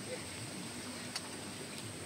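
Quiet background: a steady soft hiss with a thin high whine running through it, and two faint clicks in the second half.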